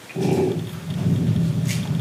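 A man's low voice through a handheld microphone, a drawn-out sound with short breaks.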